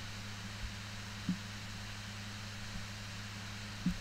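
Steady background hum and hiss of the recording, with a low electrical-sounding hum under an even hiss and one faint short sound about a second in.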